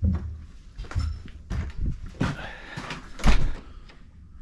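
A door being opened and shut, with a run of knocks and bumps, the loudest about three and a quarter seconds in, as someone passes through the doorway.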